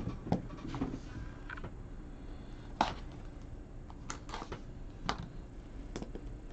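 Light clicks and taps of a cardboard trading-card box being handled and its lid worked open, a few scattered knocks with the sharpest about three seconds in, over a low steady hum.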